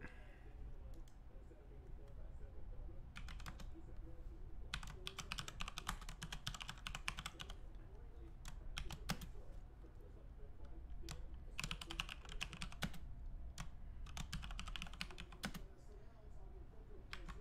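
Typing on a computer keyboard: several bursts of rapid keystrokes with short pauses and odd single clicks between them, over a low steady hum.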